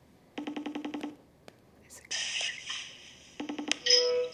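iPhone FaceTime outgoing-call ring tone, a rapidly pulsed buzzing tone, heard once about half a second in and again near the end while the call is still connecting, with a short burst of hissing noise between the two rings.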